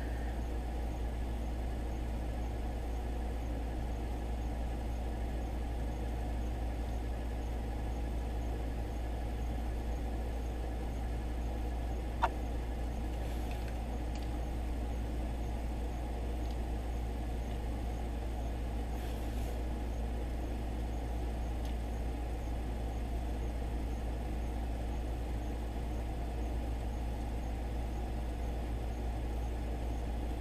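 A steady low background hum throughout, with a single faint click about twelve seconds in.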